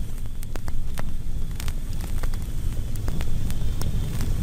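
Steady low rumbling noise dotted with irregular sharp crackles, several a second.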